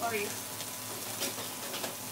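Food frying in a skillet: a steady sizzling hiss.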